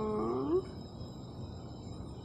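A short pitched vocal sound from a person, dipping and then rising in pitch, lasting about half a second at the start, followed by a steady faint background hum.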